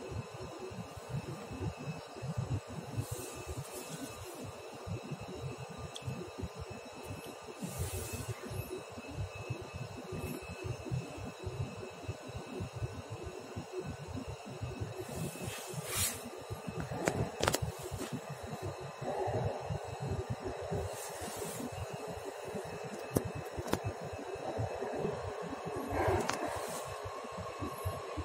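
Interior ambience of a metro car standing at a station: a steady hum from the car's ventilation, with a few faint steady tones and brief soft hisses every few seconds.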